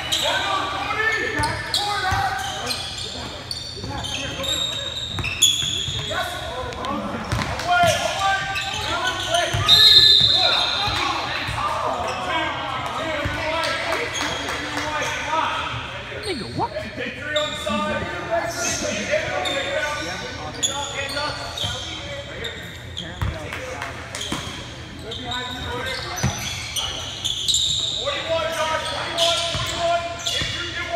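A basketball being dribbled on a hardwood gym floor during play, with scattered knocks and a brief high squeal about ten seconds in. Indistinct calls from players and spectators echo in the large hall.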